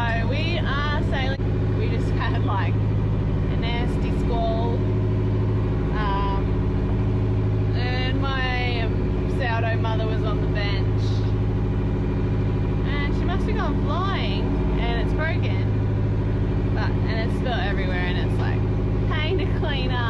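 A woman talking over a steady, even-pitched low drone.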